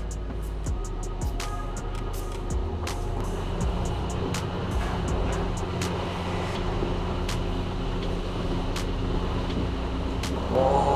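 Background music with steady sustained low notes, with short sharp clicks scattered over it, more often in the first few seconds.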